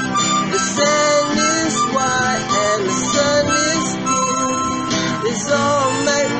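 Instrumental break: a harmonica plays a melody with bent notes over a strummed 12-string acoustic guitar.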